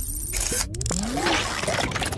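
Sound effects of an animated logo intro: a noisy whoosh with several short rising electronic sweeps and a few sharp clicks.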